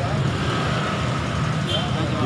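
Road traffic running past, a steady low rumble of engines, with voices in the background.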